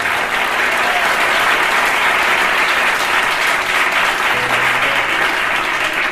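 An audience applauding steadily, many hands clapping at once.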